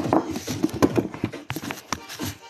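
A quick, irregular run of sharp knocks and taps, loudest around the middle.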